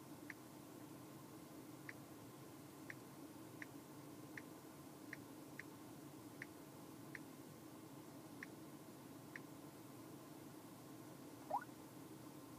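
Faint key-press clicks from a Samsung smartphone's on-screen keyboard as a Wi-Fi password is typed, about a dozen unevenly spaced taps, over a low steady hum. A brief rising tone sounds near the end.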